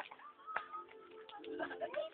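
Faint children's voices and calls in the background, with a sharp click about half a second in.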